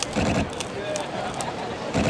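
People talking close by over a steady background of outdoor noise.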